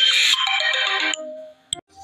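Electronic music played through Harman Kardon dome tweeters: a bright burst, then a run of falling notes that stops a little over a second in and fades. A single sharp click follows near the end.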